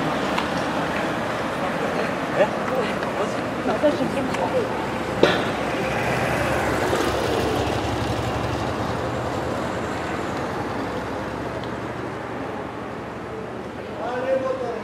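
Outdoor street background at a road race: scattered distant voices in the first few seconds, then a steady traffic-like hum that slowly fades.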